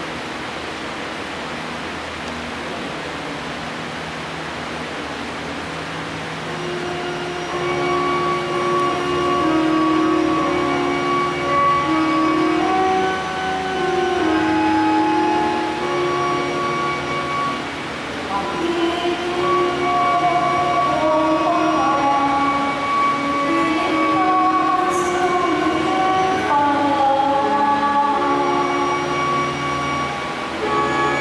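A woman singing a slow melody of long held notes over the church's microphone and sound system. The singing begins about seven seconds in, after a steady hiss.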